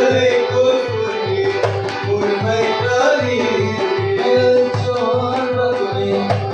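Kashmiri folk music: a nout clay pot and a tumbaknari goblet drum beat an even rhythm of about three to four low strokes a second under a sustained melody line.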